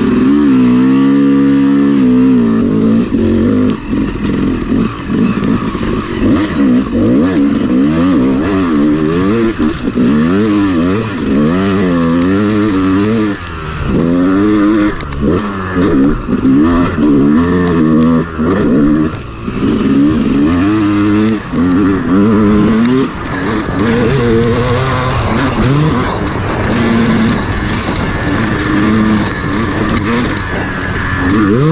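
Two-stroke Yamaha dirt bike engine being ridden hard, revving up and falling back again and again as the throttle is opened and closed through the gears, with a few brief drops in loudness along the way.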